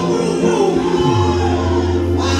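Gospel choir singing with accompaniment, over a steady low bass note.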